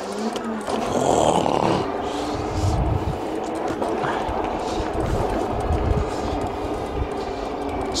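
Engwe Engine Pro 2.0 e-bike's 750 W hub motor whining steadily as the bike cruises on pavement, with wind gusting on the microphone.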